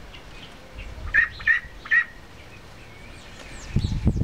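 Three short, high-pitched peeping calls from young ducks a little over a month old, a bit over a second in, with faint chirping of small birds in the background.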